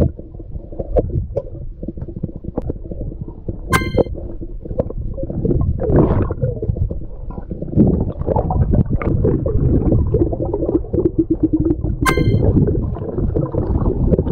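Muffled underwater rumbling and water movement picked up by an action camera held underwater while a snorkeller digs objects out of the silty seabed. Two sharp clicks with a brief ringing tone come about four seconds in and near the end.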